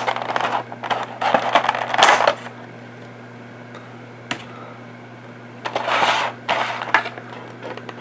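Clear plastic action-figure packaging crinkling and clicking as it is handled and pulled free: rustling bursts over the first couple of seconds and again about six seconds in, with a single sharp click a little after four seconds.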